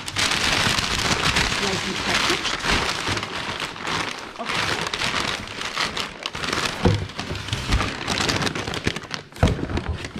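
Crumpled brown kraft packing paper crinkling and rustling steadily as it is pulled out of a cardboard shipping box, with a couple of dull knocks from the box in the last few seconds.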